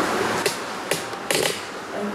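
Three short handling knocks, a little under half a second apart, over steady room noise.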